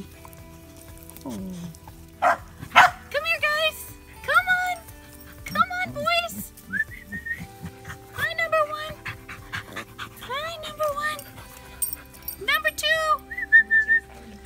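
Five-week-old Scottish terrier puppies yipping and squealing as they play, in clusters of short high-pitched calls that bend up and down, with a falling whine near the start. Music plays underneath.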